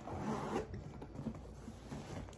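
Zipper on the back pocket of a Coach Gallery tote being pulled open, the rasp strongest in the first second, followed by faint rustling as a hand reaches into the pocket.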